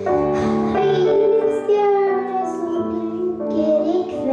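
A young boy singing a Christmas song into a microphone, his voice gliding between held notes, over a steady instrumental accompaniment of held chords.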